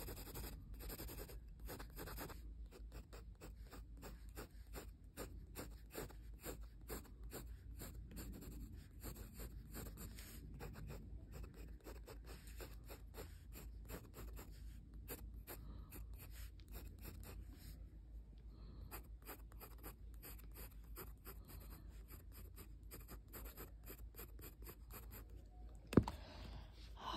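Graphite pencil shading on paper in quick, short strokes: a faint, dense run of scratches that goes on almost without pause.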